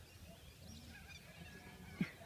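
Near silence: faint outdoor background with a low rumble and a few faint, brief high chirps.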